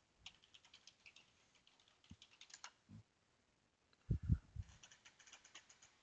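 Computer keyboard typing: quick runs of keystrokes, pausing about three seconds in, with a few louder, deeper thumps just after four seconds.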